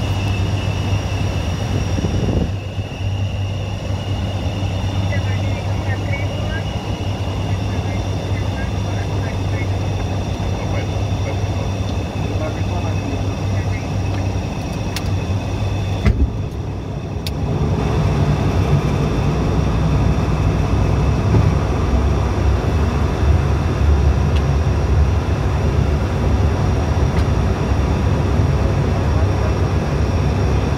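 Steady drone of an ATR 72-600's Pratt & Whitney PW127 turboprops and six-blade propellers heard from inside the cockpit in flight, a deep hum with a thin steady whine above it. After a brief dip about halfway through, the low drone comes back louder.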